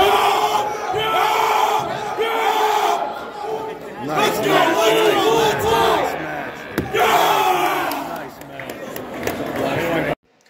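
A crowd of spectators yelling and shouting during an armwrestling match, many voices overlapping, with long drawn-out shouts in the middle. A single sharp knock sounds about seven seconds in.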